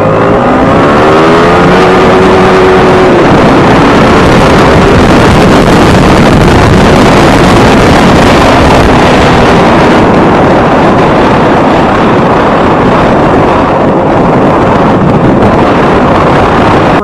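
Yamaha R15 V3's 155 cc single-cylinder engine accelerating, its note rising over the first three seconds, then running at road speed under heavy wind noise on the microphone.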